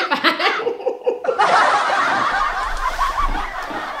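Laughter: short bursts of laughing at first, then from about a second in a dense, steady swell of laughing that fades slowly toward the end.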